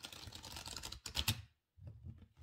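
Close rustling and clicking handling noise, with a sharper, louder burst a little past the middle and a short pause before it resumes faintly.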